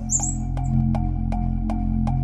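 Outro background music: a low sustained drone under a steady ticking beat of about five ticks a second, with a short high hiss right at the start.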